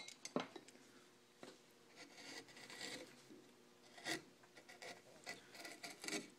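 Faint, on-and-off scraping of a No. 11 U-shaped carving gouge cutting an outline into a wooden blank, with a few small clicks of the tool against the wood.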